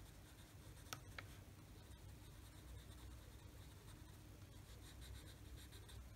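Faint scratching of a Prismacolor dark green colored pencil shading on a colouring-book page, with two light ticks about a second in.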